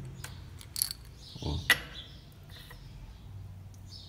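A few small clicks and clinks as a hand-held pellet sizer is taken apart and lead airgun pellets are handled, two sharper clicks standing out about one and two seconds in.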